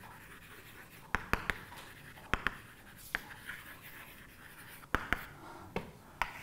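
Chalk writing on a blackboard: sharp taps of the chalk against the board, coming in small groups of two or three, with faint scratching between them.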